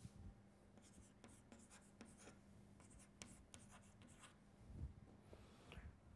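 Chalk writing on a blackboard: a faint run of short scratches and taps as characters are chalked in, one stroke after another.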